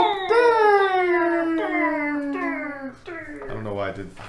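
A person singing a drawn-out vocal jingle as a homemade sound effect: a held note breaks into a series of falling glides, each dropping lower. The singing fades near the end, as a lower voice comes in.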